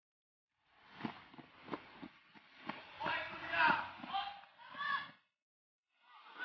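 Footsteps crunching through dry grass and undergrowth, a few sharp steps about a second in, followed by brief indistinct voices from about three seconds in.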